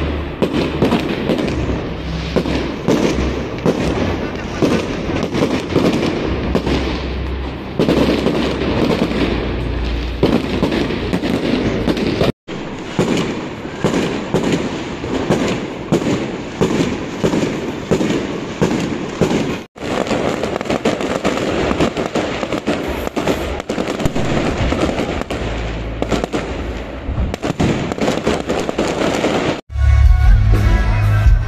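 Fireworks going off in quick succession: a dense, continuous run of bangs and crackles, broken twice by brief dropouts.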